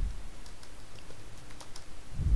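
Computer keyboard keystrokes, about eight sharp clicks in two seconds and unevenly spaced, as a line of practice text is typed.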